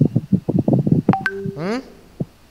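Choppy, broken-up voice over an online call, then a short electronic tone about a second in, and a man's rising, questioning "hmm?".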